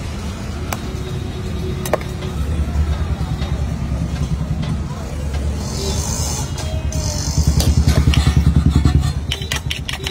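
Engine of a nearby motor vehicle running with a fast, throbbing rumble that swells loudest from about seven to nine seconds in. A few sharp clicks sound over it.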